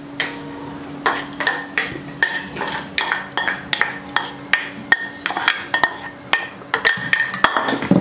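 Steel pan knocked and scraped with a wooden spatula over a steel pot, emptying sautéed vegetables into batter: irregular clinks, each with a short metallic ring.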